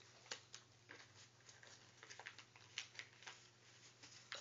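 Faint rustling and crinkling of a sheet of paper being folded and creased by hand, heard as short, scattered crackles.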